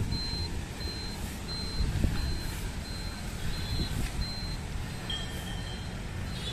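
A thin, high electronic beep repeating steadily, about three beeps every two seconds, over a steady low rumble of road traffic. Near the end a lower steady electronic tone sounds for under a second.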